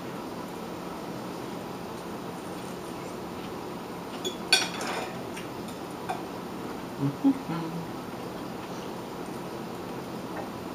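Metal fork clinking once against a plate about halfway through, with a couple of lighter knocks and a short murmured "mm" later on, over a steady low room hum.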